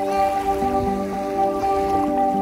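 Slow, relaxing background music of held chords, mixed over the soft wash of small sea waves lapping on a pebble shore.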